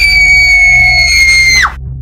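A girl's long, high-pitched scream, held at one pitch and breaking off near the end.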